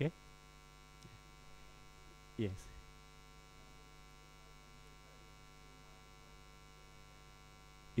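Steady electrical mains hum with many overtones, heard under the pauses between a few short spoken words.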